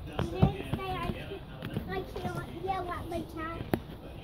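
Quiet, indistinct chatter in a young child's high voice, with a few sharp clicks.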